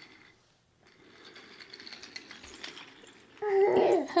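Toy train running on its track: a faint, steady mechanical rattle of small rapid clicks, starting about a second in and lasting until just before the end.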